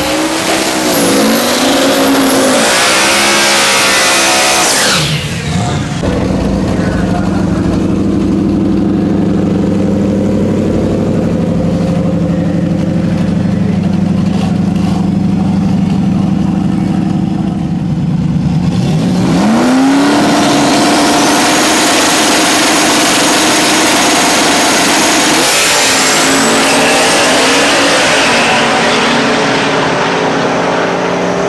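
Turbocharged Ford Mustang drag car revving, then running steadily at the line. A little past halfway it launches with a sharp rise in pitch and holds high revs as it pulls down the track. The car hooks up rather than spinning its tires on the hot track.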